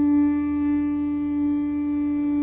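A seashell horn blown in one long, steady note.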